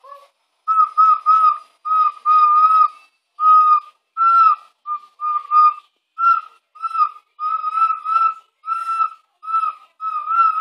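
Small pendant ocarina blown by a young child in short, breathy toots, nearly all on the same high note, about two a second.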